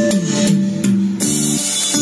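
Music played through a pair of Tannoy bookshelf speakers driven by a small amplifier board, loud and continuous with plucked guitar-like notes over a steady beat.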